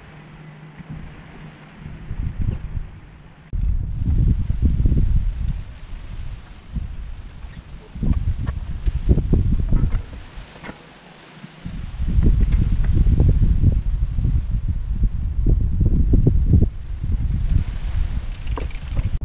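Wind buffeting the microphone: a low, gusty rumble that drops away and returns abruptly, with a few faint knocks.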